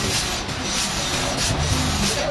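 Sawmill work noise: a forklift engine running under a steady hiss, with wood rubbing and scraping as a freshly sawn slab is held against the forks, in irregular scrapes about twice a second.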